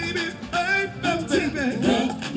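Live band music with a voice singing a melody that glides up and down over the accompaniment.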